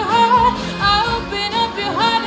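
A young woman sings a high solo vocal line, with the pitch sliding between held notes, over a pop backing track.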